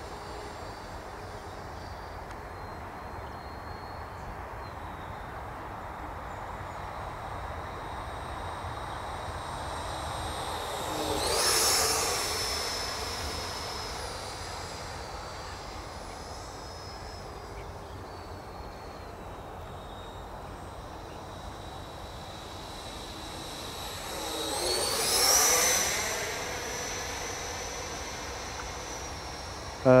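Arrows Hobby Marlin RC jet's 64 mm electric ducted fan making two fly-by passes, a third of the way in and again about three-quarters through. Each pass is a high whine that swells as the jet comes close and drops in pitch as it goes by.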